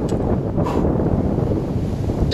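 Wind blowing across the microphone, a loud steady rumble.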